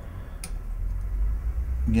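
A single light click about half a second in, from a small hex wrench being set into a Stratocaster-style bridge saddle's height screw, over a steady low hum. A man's voice starts at the very end.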